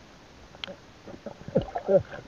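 Muffled water movement and knocks against an underwater camera's housing, with a sharp click about half a second in. Near the end a falling swoop leads into a muffled voice.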